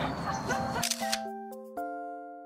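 A camera shutter click sound effect a little before halfway, with a few more clicks, followed by a short bright chime of notes that step upward, ring on together and fade. Before it there is outdoor background with voices.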